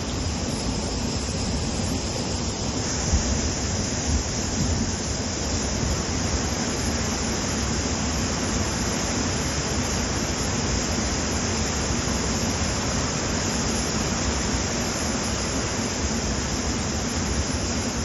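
The Manjira River in flood, its turbulent water rushing steadily over rapids.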